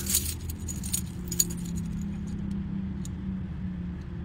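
Metal chains or jewelry jangling and clinking, thickest in the first second or so and then in scattered clicks, over a steady low hum.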